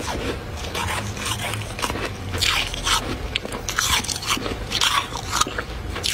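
Thick freezer frost crunching in a rapid run of short, crisp strokes, louder in the second half.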